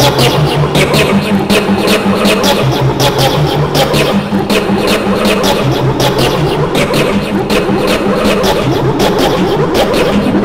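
Dense, loud mix of many overlaid, effect-processed copies of a video soundtrack. A low hum switches between two pitches every second or two under constant rapid clicking and smeared, garbled sound.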